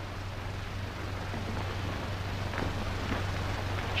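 Steady hiss and low hum of an old film soundtrack, with a few faint soft knocks.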